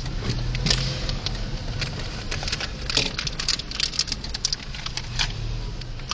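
Car heard from inside the cabin, moving slowly with a steady low engine hum, with scattered light clicks and rattles throughout.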